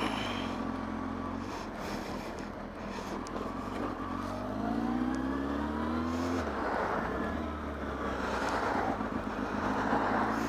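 Motorcycle engine pulling away and accelerating, its note rising steadily and then easing off about six and a half seconds in, over rushing wind on the helmet microphone.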